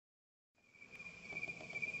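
Crickets chirring steadily in meadow grass, one high continuous shimmering tone, fading up from silence about half a second in, with a few faint ticks beneath.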